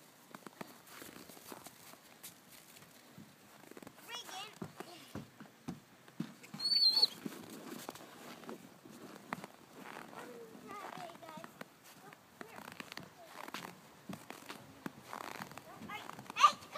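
A few short, high-pitched squeaks from six-week-old German shorthaired pointer puppies, the loudest about seven seconds in, over soft scuffing and crunching in snow and faint distant voices.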